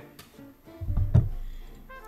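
Dull thumps and a knock about a second in as a glass whiskey bottle is picked up from the table, over quiet guitar music.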